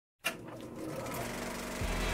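Intro sound design for an animated title card: a sharp hit a quarter second in, then a steady mechanical whirring texture under a swelling musical drone, with deep bass coming in near the end.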